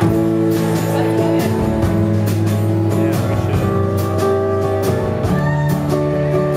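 Live folk-rock band playing: acoustic guitar strumming over upright double bass, with a steady beat of strums.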